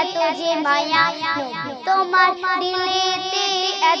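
A solo voice singing a Bengali Islamic devotional song (gojol), drawing its notes out in wavering ornaments over steady held backing tones.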